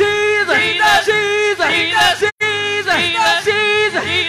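Gospel praise team of male and female singers singing into microphones, holding long notes with vibrato. The sound drops out completely for an instant a little past halfway.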